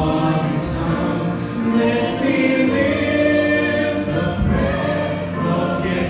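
A mixed group of men and women singing a Christian song in harmony into handheld microphones, holding long, sustained chords.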